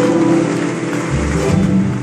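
Live band of acoustic guitars, double bass, congas and keyboards playing the held closing chords of a song, with a deep bass note about a second in.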